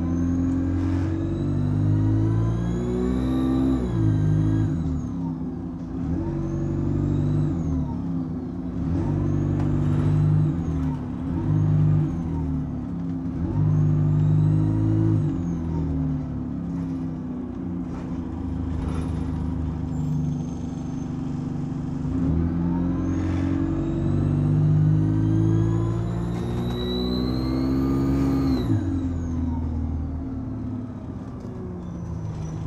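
Alexander Dennis Enviro200 single-deck bus's diesel engine accelerating through its gears, its turbocharger screaming: a high whine rises steeply with each pull and drops sharply when the power comes off, several times over. The highest, loudest rise comes near the end, over a steady low engine drone that steps at each gear change.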